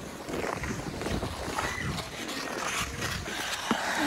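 Ice skate blades gliding and scraping on rink ice: a steady rough hiss broken by many short scrapes, over a low rumble.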